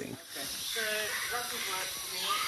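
Outdoor evening ambience: a steady high hiss, with faint distant voices.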